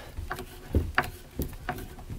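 Hand screwdriver turning a screw through a metal strut bracket into soft cabinet wood: a handful of irregular clicks and light knocks as the screw is driven.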